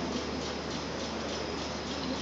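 Room tone of a large hall: a steady, even hiss with a low hum underneath, no voices.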